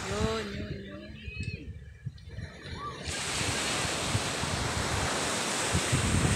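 Surf breaking and washing up a beach, heard through wind on a phone microphone. It is quieter for the first few seconds, then a steady, even rush from about three seconds in.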